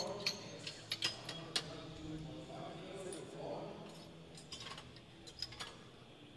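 Scattered sharp metal clinks and clicks from steel weight plates and collars being handled on a barbell, over faint background voices. The clicks come in a cluster in the first two seconds and again a few times near the end.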